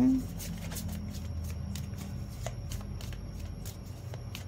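A deck of tarot cards being shuffled by hand: a quick, irregular run of light card slaps and flicks.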